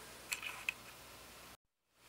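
Faint room tone with two short, faint clicks about a third and two-thirds of a second in, then dead silence where the recording is cut.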